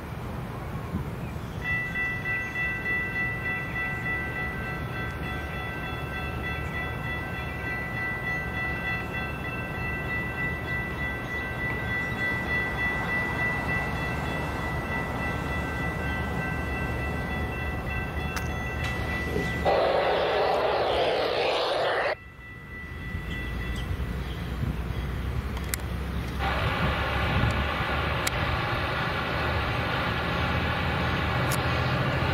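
Railroad grade-crossing warning bell ringing steadily for about twenty seconds as a Tri-Rail diesel locomotive approaches, with a loud horn blast near the end of that stretch. After an abrupt break, a locomotive air horn sounds a sustained chord for the last few seconds.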